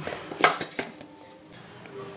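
Hands kneading wheat dough in a stainless steel bowl, the bowl clinking sharply once about half a second in, followed by a few lighter ticks and soft handling noise.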